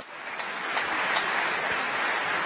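A crowd applauding, a steady wash of clapping that swells in just after the start, greeting a good payload fairing separation.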